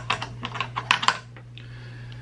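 A quick run of small, sharp metallic clicks and taps as the stock trigger parts are worked out of an AK receiver by hand, stopping about a second and a half in. A steady low hum runs underneath.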